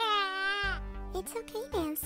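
A child's voice wailing in one long, drawn-out cry that falls in pitch and stops within the first second, followed by short broken voice sounds, over background music.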